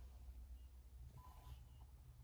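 Near silence inside a car: only a faint, steady low hum.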